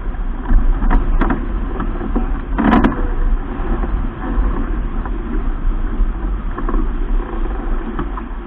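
Wind buffeting the microphone and water rushing along the hull of a keelboat under sail, a steady loud rumble. A couple of light knocks come about a second in, and a louder thump near three seconds in.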